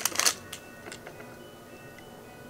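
Packaging crinkling briefly at the start, followed by a couple of light clicks, then a quiet stretch with faint steady tones.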